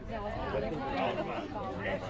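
Overlapping chatter of several voices talking at once, with no single speaker standing out.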